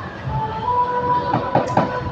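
A person slurping up a long mouthful of khanom jeen rice noodles: a long sucking slurp with a steady whistle-like tone, and a few short wet sucks near the end.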